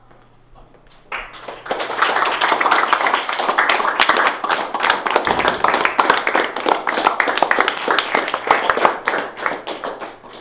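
A small group of people clapping. The clapping starts about a second in, builds quickly and dies away near the end.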